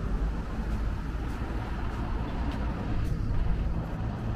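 Road traffic passing: a steady rumble of cars and heavier vehicles.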